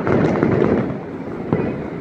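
Fireworks display heard from a distance: a dense, continuous barrage of shell bursts and crackling, with a few sharper cracks standing out. It eases off a little about a second in.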